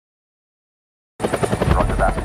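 Helicopter rotor blades chopping in a fast, even beat, cutting in abruptly about halfway in after silence.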